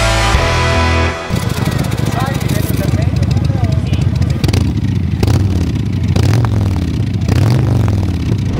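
Rock music cuts off about a second in. It gives way to motorcycle engines running and revving, rising and falling, with several sharp pops.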